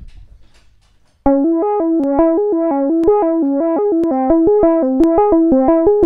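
Basic subtractive synthesizer patch in VCV Rack (oscillator through a filter whose cutoff an LFO modulates, with an envelope-controlled amplifier) played from a MIDI keyboard: a quick run of short notes starting about a second in. The tone's brightness rises and falls slowly, a sound that is kind of breathing and evolving over time.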